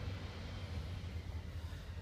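A steady low background hum with faint even noise and no distinct event.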